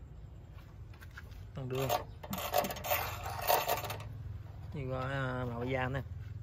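A hand rubbing and scraping over the lugged rubber tread of a walking tractor's tyre, a dense rasping stretch of about a second and a half in the middle.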